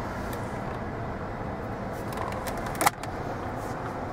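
A steady low hum inside the cabin of a 2015 Chevrolet Malibu, its 2.5-liter four-cylinder engine idling. A single sharp click comes a little under three seconds in.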